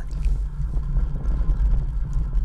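Steady low rumble of a bicycle riding on a wooden velodrome track, picked up by a camera mounted on the bike.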